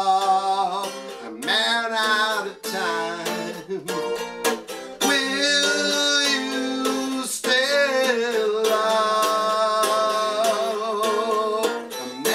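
A man singing while strumming chords on a ten-string, steel-strung tiple, a ukulele-like instrument.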